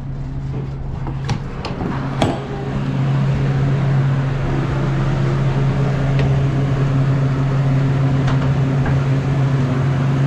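Walk-in cooler refrigeration system running with a steady hum while it pulls the box temperature down after a new expansion valve and refrigerant charge. Two sharp clicks come about one and two seconds in, and the hum gets a little louder about three seconds in.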